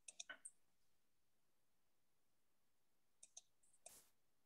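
Faint computer mouse clicks over near-silent room tone: a quick run of four just after the start and a few more near the end.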